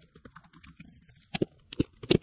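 Typing on a computer keyboard: a run of short key clicks, a few louder ones a little past the middle.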